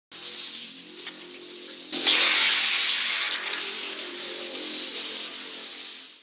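Intro music for a channel logo reveal: a dense, hissing sweep with faint sustained tones under it. It swells suddenly about two seconds in and starts to die away near the end.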